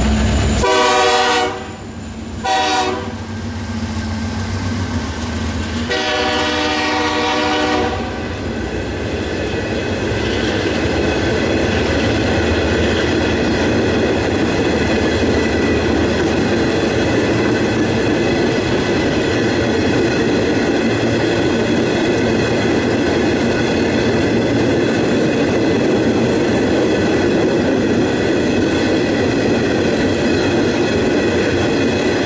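A Norfolk Southern diesel locomotive's engine rumbles as it goes by, and its horn sounds three blasts: two short ones within the first three seconds and a longer one of about two seconds around six seconds in. After that, a string of empty rail-carrying flatcars rolls past with a steady sound of steel wheels running over the rails.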